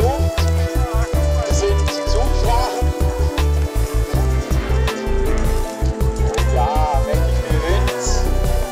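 Background music with a heavy, choppy bass beat and a melody over it.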